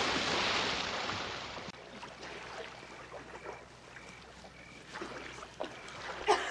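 Swimming-pool water splashing and churning after a person plunges in, loud at first and dying away over the first two seconds into quieter sloshing and lapping as she swims.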